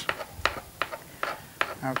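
Kitchen knives striking a cutting board as peeled cucumber is diced, about five short sharp knocks roughly every half second.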